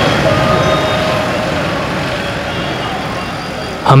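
Urban road traffic noise, a steady hum of passing vehicles that slowly fades.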